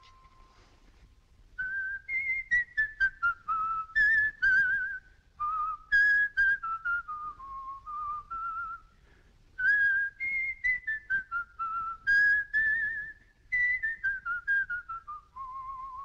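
A man whistling the musical box's unusual melody by ear, short wavering notes in several phrases, ending on a long held low note.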